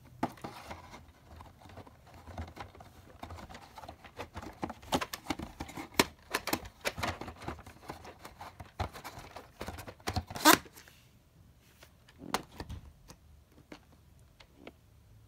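Hands handling VHS tapes: a plastic cassette and its cardboard sleeve rubbing, sliding and knocking, with scratchy rustles and clicks. The loudest is a short scrape about ten and a half seconds in, and it is quieter after that, with a few clicks.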